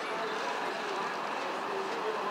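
Steady background noise of a busy shopping area, with faint distant voices.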